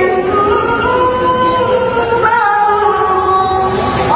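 A male reciter chanting the Qur'an in melodic tilawah style over a microphone, in qira'at sab'ah recitation. He holds one long phrase of sustained, ornamented notes, steps up in pitch about halfway through, and breaks off briefly near the end before the next phrase begins.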